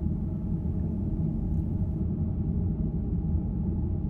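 A steady low drone with no speech, level throughout, made of low sustained tones with a rumbling undertone.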